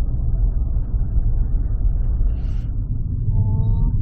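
Steady low rumble of a car driving at speed, heard from inside the cabin: road and engine noise. A short pitched tone sounds briefly near the end.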